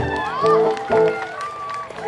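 Live band playing through a stage PA, with a held instrument note that stops and restarts several times, and voices shouting over the music.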